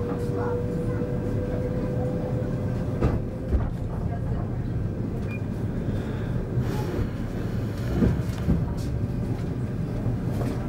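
Passenger train running as it pulls away from a station, heard from inside the carriage: a steady low rumble of wheels on rail, with a thin steady whine that fades out about three seconds in and a few short knocks later on.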